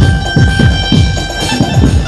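Dhumal band playing a song at high volume: a steady beat of deep drum hits under a sustained melody line.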